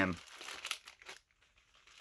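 Faint crinkling of a clear plastic bag being handled, a few soft crackles within the first second.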